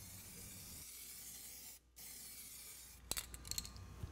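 Aerosol can of Medallion Rubberseal RS-512 weld-through primer spraying, a faint steady hiss broken by a brief gap partway through. A few light clicks and knocks near the end.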